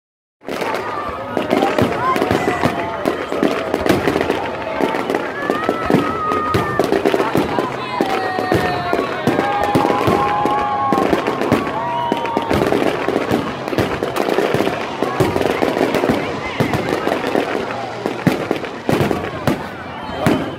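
Fireworks display: aerial shells bursting overhead in rapid, continuous bangs and crackling.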